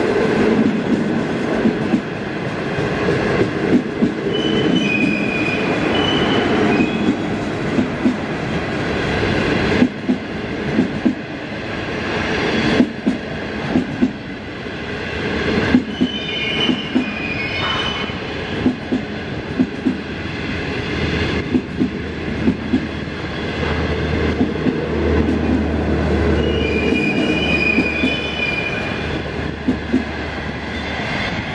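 Chinese 25G passenger coaches rolling past at speed: a steady rumble of wheels on rail, with sharp clicks in irregular groups as the wheelsets cross rail joints. Brief high-pitched squeals rise out of it three times.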